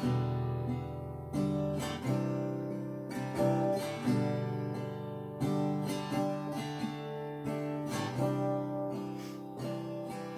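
Acoustic guitar played solo: slow strummed chords, each left to ring out before the next strum, with no voice yet.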